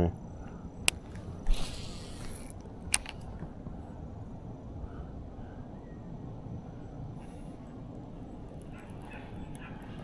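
Fishing rod and baitcasting reel being handled: a sharp click, a brief whirring swish about a second and a half in, and another click, over a steady low outdoor background.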